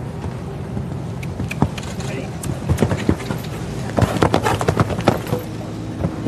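A show-jumping horse's hooves cantering on arena sand, a run of short dull thuds that cluster in groups in the second half, over a steady low murmur of a large crowd.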